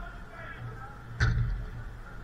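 A single loud thud of a football being struck, a little over a second in, over faint distant shouts of players.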